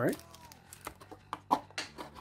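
Foil booster packs crinkling as they are handled and set down on a playmat: a run of short, crisp rustles at irregular intervals.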